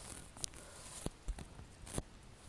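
A few faint clicks and taps of handling noise as the phone recording the video is held and shifted in the hand.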